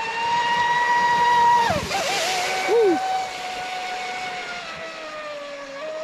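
Traxxas Spartan RC boat's brushless motor and 45 mm prop running at speed: a high-pitched whine that drops suddenly a little before two seconds in, with a brief rush of hiss, then carries on lower and slowly sinks in pitch. The boat is late in its run, its battery packs close to low-voltage cutoff.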